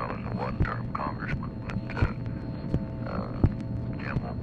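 Dictabelt recording of a telephone line: a steady hum with a soft thump about every one and a half seconds, under faint, muffled telephone speech.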